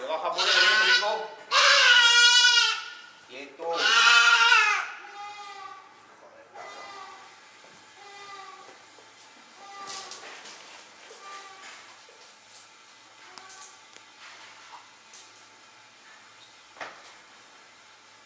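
A young goat gives three loud, wavering distress bleats in the first five seconds, then fainter calls. It is held with electric stunning tongs pressed to its head, and it still calls out, a sign that it is not effectively stunned. A sharp click comes near the end.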